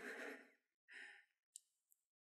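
Near silence in a small studio, opening with the fading tail of a person's long sighing exhale, then a faint breath and a small click.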